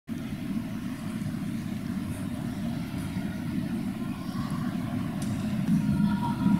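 Steady low rumble of an indoor sports hall's background noise, even throughout with no distinct events.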